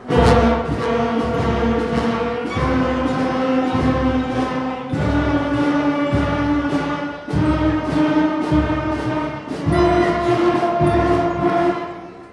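A school concert band of flutes, other woodwinds and brass plays a series of five long held chords, each about two seconds, stepping mostly upward in pitch with a steady beat marked underneath: a long-tone warm-up exercise.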